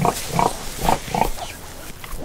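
Newborn piglets squeaking: four short calls in quick succession, then a quieter stretch near the end.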